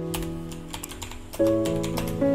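Quick, irregular clicks of typing on a keyboard over instrumental background music of sustained chords, which change to a new chord about a second and a half in.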